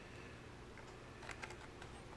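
Faint clicks and taps of small plastic parts as a wireless keyboard dongle is worked into a USB port of a Raspberry Pi in a 3D-printed plastic housing, with a few clicks in the second half.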